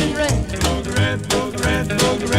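Instrumental stretch of a 1950s rockabilly song: electric guitar over a brisk, even beat of about three hits a second.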